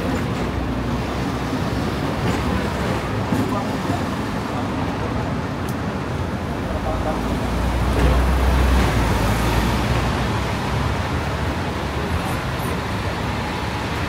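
Steady city road traffic heard from on board a Hong Kong double-decker tram, the tram's running noise mixed with buses and taxis. A deeper rumble swells about eight seconds in as a double-decker bus passes close alongside.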